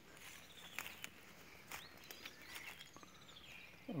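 Faint outdoor ambience at a pond: a few soft bird chirps over a low hiss, with several faint clicks.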